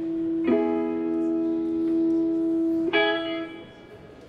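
Guitar chords ringing out. A chord is struck about half a second in and held, a second is struck near the three-second mark, and both fade away before the end.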